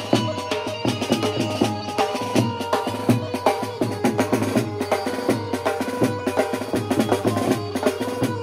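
Drums played live in a fast rhythm: a snare drum struck with sticks and a large two-headed dhol-type drum, with a pitched melody line held underneath.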